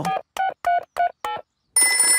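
Mobile phone keypad beeping about five times as its buttons are pressed, each beep short and at a slightly different pitch. Near the end a telephone starts ringing.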